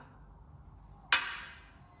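Fencing blades striking together: one sharp metallic clash about a second in that rings and fades, then a second, lighter clash at the very end.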